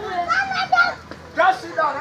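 A group of children's voices calling out and chattering in short bursts, at play.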